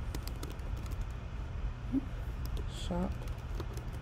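Typing on a computer keyboard: a run of quick, light key clicks.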